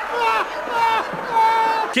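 A man's voice wailing in long, high, drawn-out cries, about three in a row, each falling off in pitch at the end.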